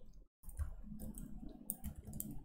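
A few faint, sharp clicks over low room noise, spread over about two seconds.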